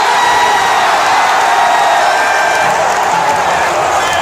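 Large ballpark crowd cheering and yelling after a home run, with fans right beside the microphone shouting.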